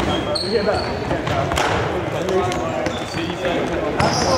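Athletic shoes squeaking and feet thudding on a sports hall's wooden floor as players run and cut, with a few short high squeaks. Voices carry across the hall.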